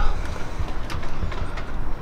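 A steady low rumble of background noise, with a few faint clicks about a second and a half in.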